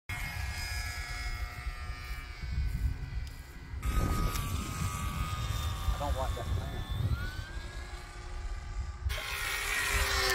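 Electric RC model T-28 Trojan flying past, its motor and propeller giving a steady whine whose pitch slides down and later rises as the plane moves, with wind rumbling on the microphone.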